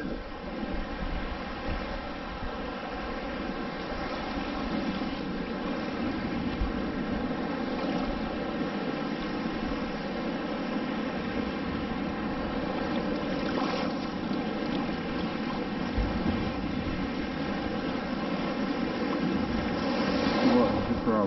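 Shallow seawater swishing and washing around the legs of someone wading, under a faint steady drone.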